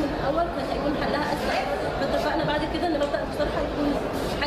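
Speech only: a woman talking in Arabic.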